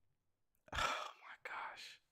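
A man's breathy, whispered vocal sounds in two short bursts, starting about a second in after a moment of silence.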